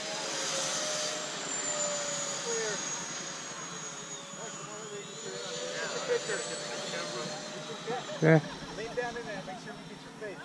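High whine of electric ducted fans on radio-controlled model jets flying a loop overhead, dipping in pitch through the middle and rising again. A few short words are spoken near the end.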